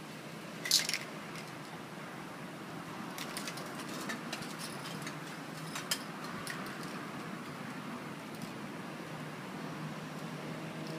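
Spray-paint artwork being worked by hand: one brief hissing burst about a second in, the loudest sound, then scattered light clicks and scratches of tools and paper on the painting, over steady background noise.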